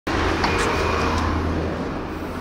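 Road traffic noise: a steady low rumble with a few light clicks of footsteps on paving tiles. It grows a little fainter near the end.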